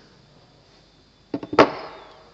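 A couple of quick light taps and then one sharp knock, about a second and a half in, with a short ring after it: wooden prop parts being handled and knocked against each other or the workbench.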